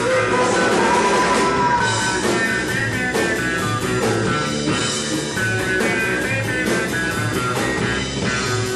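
A live psychedelic rock band playing loudly: a semi-hollow electric guitar over bass guitar and a drum kit.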